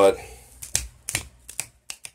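Fingers snapping: about five sharp clicks at uneven intervals over a second and a half, much quieter than the voice.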